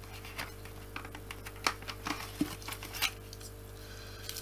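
Small clicks and taps of a screwdriver and hard plastic as the Torx screws and end cap are worked off a Dyson DC25's brush roll housing: about half a dozen sharp, irregular clicks over a faint steady hum.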